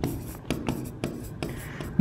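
A pen writing on a presentation board: several short scratchy strokes and taps as words are written.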